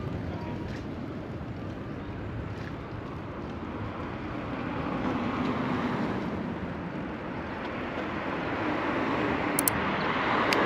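Wind rushing over the microphone of a camera on a moving bicycle, with steady road noise. It grows louder near the end as an oncoming car approaches.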